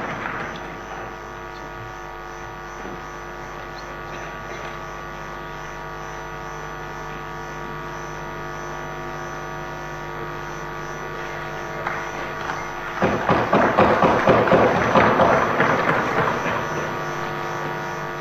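A steady electrical hum of several held tones from the chamber's sound system. About thirteen seconds in, applause rises and carries on, louder than the hum.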